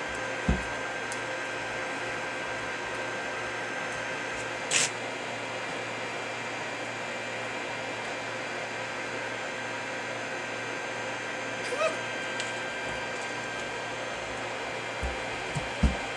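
A steady hum runs throughout. Over it come a few soft thumps and one sharp crinkle about five seconds in, as a red fox paws and noses a knotted rope toy on a plastic-sheeted floor.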